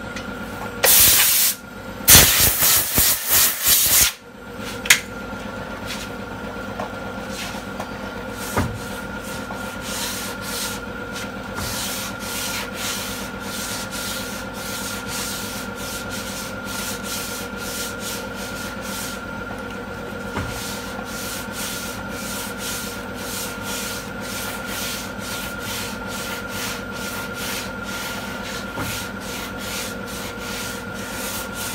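Sandpaper on a hand sanding block rubbing over a car door panel in steady back-and-forth strokes, from about nine seconds in: final hand blocking of the bodywork before primer. A few loud rushing noises come in the first four seconds.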